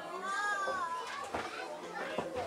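A child's high voice calling out, rising and then falling over about a second, over the chatter of a crowd; a sharp knock about one and a half seconds in.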